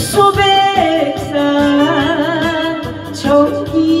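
A singer sings a slow melodic line with vibrato over full instrumental backing in a Korean song. The line begins just after the start and is held and wavering through the middle.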